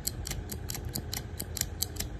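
Vintage Ronson lighter's lever mechanism being worked, a quick run of light metallic clicks about five a second.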